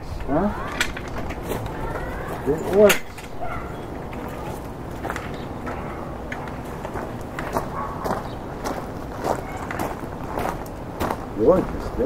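Short bursts of indistinct voices, just after the start, about three seconds in and again near the end, with scattered light clicks and knocks in between.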